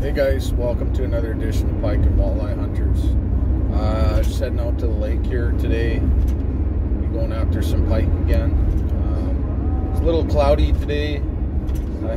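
Steady low road rumble of a moving vehicle heard from inside the cabin, under a man's talking.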